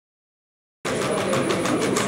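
Unitree Go1 robot dog walking on a tile floor: a busy mechanical running sound from its leg motors with quick clicking taps from its feet. It cuts in abruptly about a second in, after silence.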